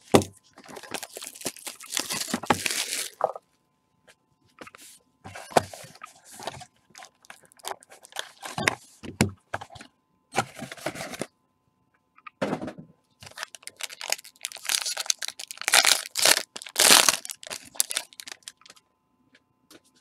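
A sealed trading-card box being torn open by gloved hands: irregular bursts of tearing and crinkling of the wrapper and cardboard, with short pauses between them, as the lid is opened and the stack of cards pulled out.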